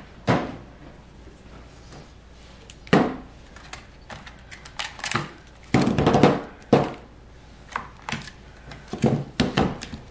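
Plastic clamshell wax-melt packs being set down and shuffled on a stainless steel table: a series of irregular knocks and clatters, thickest in the middle and again near the end.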